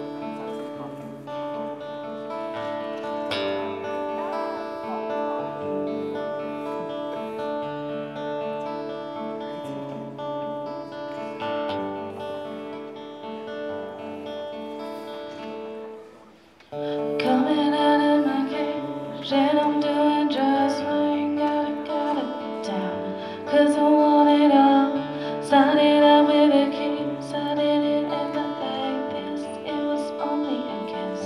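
Acoustic guitar playing a steady chord intro. After a short break about halfway through, the guitar comes back louder and a woman starts singing over it.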